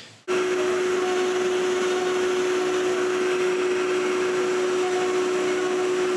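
CNC router milling an MDF door panel: a continuous machine whir with one steady tone. It starts abruptly and holds level throughout.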